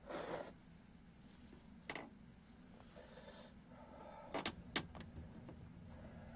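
Paper rustling and handling noises: a short rustle at the start, a small tap about two seconds in, and two sharp clicks close together just before five seconds, over a steady low hum.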